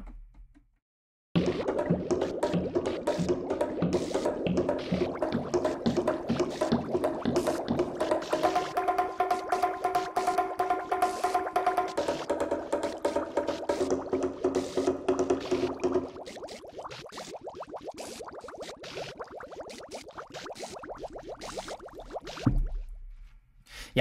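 Steinberg Materials: Wood & Water 'Water Wood Drummer' patch playing a rhythmic pattern built from recorded wood and water sounds, knocks and plops, over sustained pitched tones. It starts about a second in, drops to a quieter, thinner pattern about two-thirds of the way through, and stops shortly before the end.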